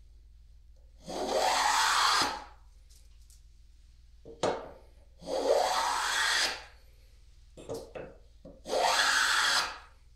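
Hand plane cutting a chamfer along the edge of a wooden vise jaw: three long strokes, each about a second and a half, the blade shaving the wood. A few short knocks come between the strokes.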